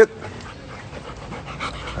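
A golden retriever panting softly.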